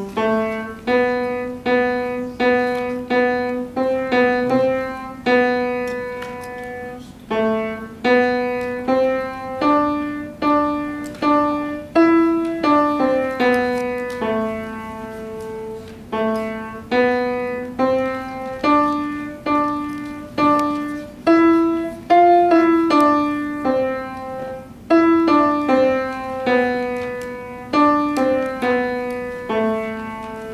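A grand piano played by a young pupil: a simple melody of single struck notes, several repeated at the same pitch, over a lower accompaniment line.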